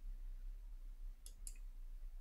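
Two faint computer-mouse clicks about a quarter second apart, a little past the middle, over a low steady hum.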